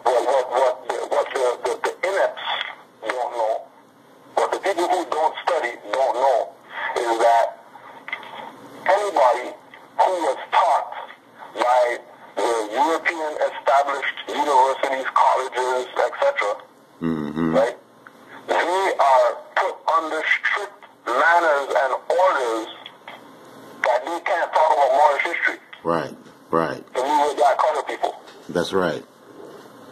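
Speech: a person talking at length in phrases with short pauses.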